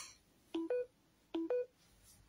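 An electronic two-note beep, a lower note followed by a higher one, sounding twice about three-quarters of a second apart.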